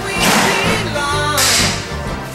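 A song playing, with a singing voice over a beat and two bright crash-like hits, one just after the start and one about halfway in.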